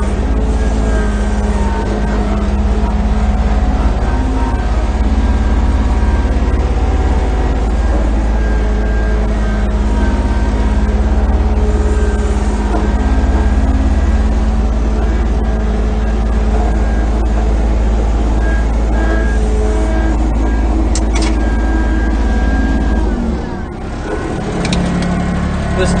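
Diesel engine of a John Deere F1145 front-mount mower running steadily under way, heard from inside its enclosed cab, a little loud in there. About 23 seconds in the low engine drone drops away as the engine is throttled back, with a few sharp clicks around it.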